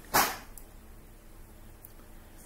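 A single short, loud vocal burst a fraction of a second in, then quiet room tone.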